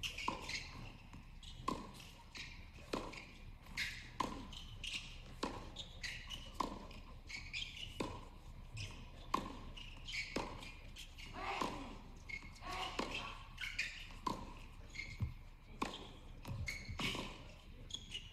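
Tennis rally: rackets striking the ball back and forth in a long exchange, one sharp hit about every 1.2 seconds.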